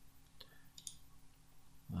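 Two faint computer mouse clicks, about half a second apart, as a checkbox in a web form is ticked, over a low steady room hum.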